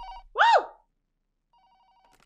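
Telephone ringing with a rapid two-tone electronic trill. The ring stops about a quarter second in, and a fainter ring starts about a second and a half in. A short, loud vocal exclamation falls between the two rings, about half a second in.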